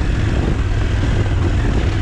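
KTM 790 Adventure S parallel-twin engine running steadily under load up a steep gravel climb, with wind noise on the helmet microphone.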